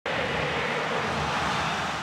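Stadium crowd noise from the stands as the teams walk out onto the pitch: a steady wash of many voices that starts abruptly at the very start.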